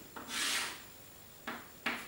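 Chalk drawing lines on a blackboard: one longer stroke of about half a second near the start, then two short, sharp strokes in the second half.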